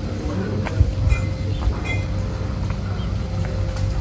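Wind rumbling on the microphone, with a faint steady hum, a few light clicks and two short high chirps a little over a second in.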